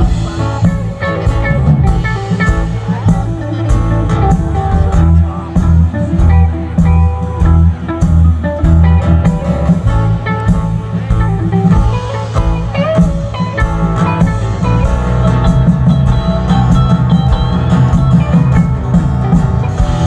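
Live rock band playing an instrumental passage with no vocals: electric and acoustic guitars over a drum kit, with bending guitar lead lines above the rhythm.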